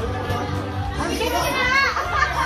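Karaoke backing track playing with steady bass, while people talk over it and a child's voice rises in pitch near the end.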